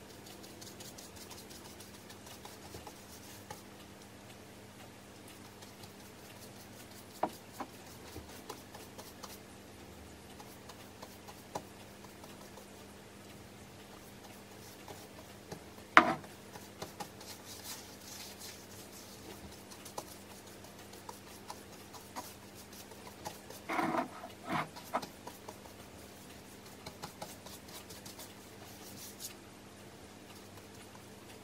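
Quiet sounds of hand painting: a paintbrush dabbing and brushing, with light ticks of the brush and paint tin. One sharp knock about halfway through, likely the tin set down or the brush tapped on its rim, and a short cluster of knocks a few seconds later, over a faint steady low hum.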